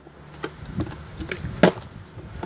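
Plastic water bottle being flipped and landing on a wooden porch step: several short knocks, the loudest about a second and a half in.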